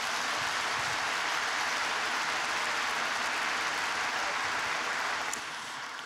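A large audience applauding steadily, dying away near the end.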